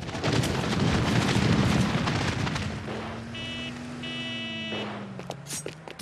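Cartoon sound effect of an electrical power surge: a loud crackling burst that fades over about three seconds, then a low hum that slowly falls in pitch, with two short high electronic tones partway through.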